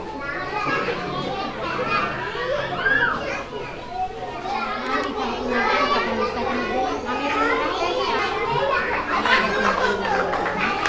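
Many young children chattering and calling out at once in a large hall, their high voices overlapping.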